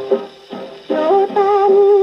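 A 1950 Japanese popular song playing from a 78 rpm record on a Paragon Model No 90 acoustic phonograph, heard through its soundbox and horn. A phrase ends, there is a brief lull, and about a second in a singer comes in on a long held note.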